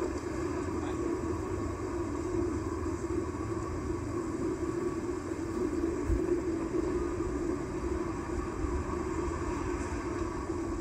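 Outdoor horn loudspeaker of a mini bosai musen warning system switched on and live, putting out a steady hum with hiss and no tone yet; it starts suddenly at the outset.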